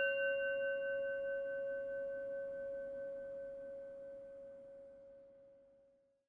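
A bell ringing out after a single strike: one clear tone with fainter, higher overtones, slowly fading until it dies away near the end.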